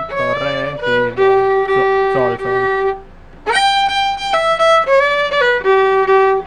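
Solo violin playing a short huapango phrase note by note, with one long held note in the middle; the playing stops briefly about three seconds in, then the phrase starts again.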